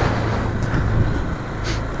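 Honda CB300 single-cylinder motorcycle engine running steadily while riding, with wind noise over the microphone.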